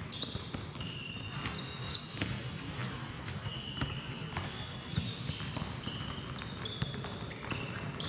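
Several basketballs being dribbled on a hardwood gym floor, the bounces irregular and overlapping, with short high sneaker squeaks on the floor scattered through.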